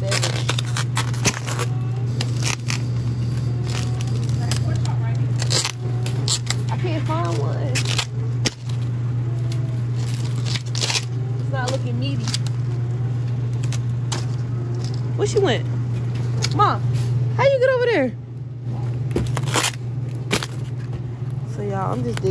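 Plastic bag and plastic-wrapped meat trays crinkling and clicking as packages are handled in a refrigerated supermarket meat case, over a steady low hum and faint background voices.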